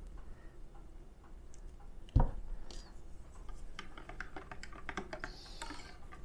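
A single knock about two seconds in, like a bottle set down on a table, then a run of light, quick clicks from a plastic stirrer stirring coffee in a ceramic mug.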